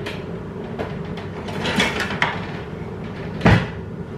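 A kitchen cupboard door shut with a heavy thump about three and a half seconds in, after a few lighter clicks and knocks, over a steady low hum.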